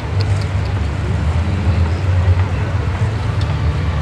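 A loud, steady low rumble with no clear rhythm or single event.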